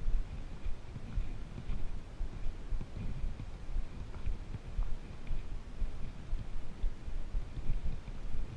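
Footsteps and trekking-pole strikes on a dry, leaf-covered dirt trail, heard as irregular low thumps with rustling and some wind rumble on the camera microphone.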